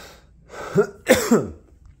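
A man coughing and clearing his throat once, a rough burst of about a second starting about half a second in: the cough of a cold he is still getting over.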